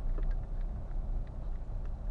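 Car driving slowly over a muddy, potholed dirt road, heard from inside the cabin: a steady low rumble of engine and tyres, with a few faint ticks.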